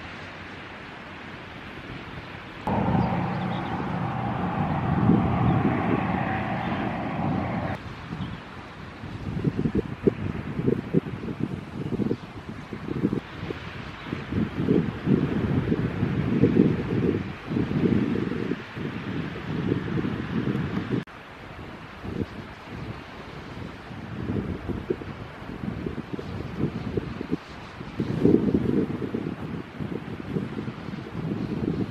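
Wind buffeting the camera microphone in uneven gusts. From about three seconds in, a steadier hum with a held tone runs for about five seconds, then the gusts carry on alone.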